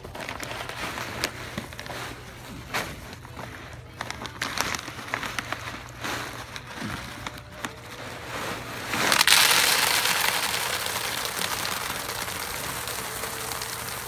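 A plastic bag of expanded clay pebbles (hydroton) crackling and rustling as it is handled. About nine seconds in, the pebbles are poured from the bag into a plastic tub: a loud rattling rush of clay balls that slowly tapers off.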